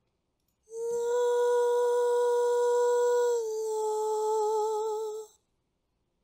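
A singer's wordless improvised vocal phrase portraying love: one long steady held note, then a slightly lower note sung with vibrato, ending about five seconds in.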